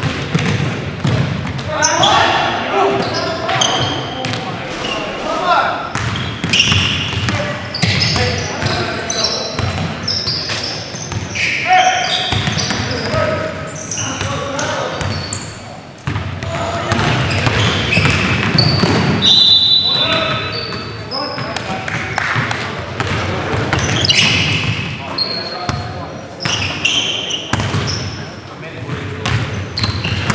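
A basketball being dribbled and bounced on a hardwood gym floor amid players' voices and calls, echoing in a large gymnasium. A brief high steady tone sounds about two-thirds of the way through.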